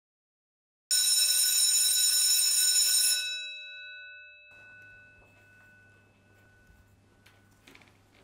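Electric school bell ringing loudly for about two seconds, starting about a second in, then stopping and dying away over a couple of seconds, leaving a faint low hum.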